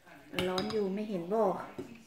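A metal fork and spoon clink against a glass bowl of noodles, with a sharp clink about a third of a second in and a few lighter ones after. A woman's voice sounds over the clinks and is the loudest thing heard.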